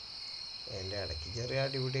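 A steady high chirring of crickets throughout, with a person's voice coming in under a second in and running on.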